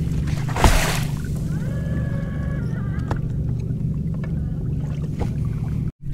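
Steady low motor hum aboard a bass boat. A brief rush of noise ending in a thump comes about half a second in, and a faint high tone rises, holds and falls around two to three seconds in.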